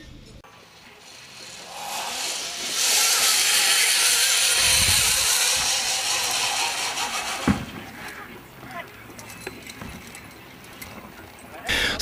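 Zip-line trolley running down a steel cable: a hissing whir that builds over the first couple of seconds, stays loud for several seconds, then fades away. A low thump comes about halfway through and a sharp click a little later.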